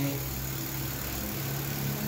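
A steady low hum from a running motor, even and unchanging.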